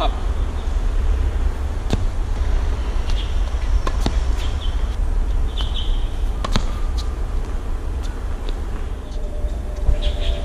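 Tennis racket volleying a tennis ball: a few sharp pops of ball on strings about two seconds apart, over a steady low rumble.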